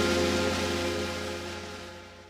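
Music: a chord of struck mallet percussion and bells ringing out and fading steadily away, with no new notes played.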